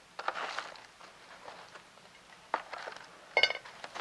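Damp potting mix being spooned from a stainless steel bowl into a plastic seedling cell pack: a soft scraping rustle near the start, then a faint tap and a short metallic clink near the end as the spoon is set down in the bowl.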